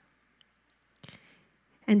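Near silence in a pause between spoken phrases, broken by a faint click and a brief soft sound about a second in; a woman's voice resumes through the microphone near the end.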